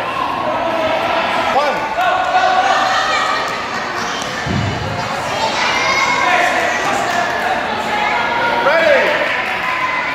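Children's voices and chatter echoing in a gymnasium, with shoes squeaking several times on the wooden court floor and a dull thump about halfway through.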